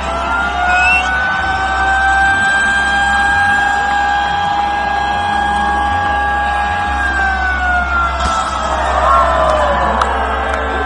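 Live hard-rock band through a large festival PA, heard from within the crowd: one long sustained high note held steady for about seven seconds, then sliding down in pitch near the end, over a heavy low bass rumble.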